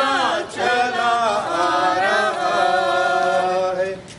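Processing congregation singing a hymn together in long held notes. There is a brief break about half a second in, and the phrase ends just before the close.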